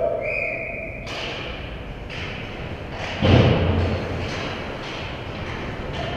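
The sounds of ice hockey play on a rink: a short steady high tone in the first second, then scraping and scattered knocks, with a loud, deep thud about three seconds in.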